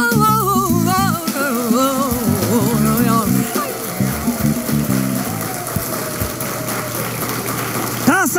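A TV segment's theme jingle: a sung melody over a stepped bass line, ending about three and a half seconds in. It is followed by a steadier, slightly quieter rushing sound.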